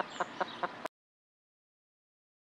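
Chickens giving a handful of short, quick clucks over faint outdoor background noise, cut off abruptly to dead silence just under a second in.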